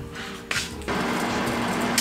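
Cherry tomatoes frying in a pan: a steady sizzling hiss that starts suddenly about a second in, over soft background music.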